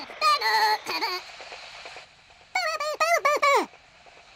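Squeaky gibberish voice of a clay-animation cartoon character: a warbling high-pitched phrase in the first second, then a run of about five short falling squeaks near the three-second mark.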